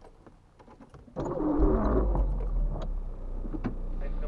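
Car engine starting about a second in, after a few faint clicks, then settling to a steady idle.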